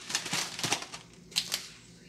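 Plastic bags and foam meat trays crinkling and rustling as frozen meat packages are handled and set on a counter, in two short bursts.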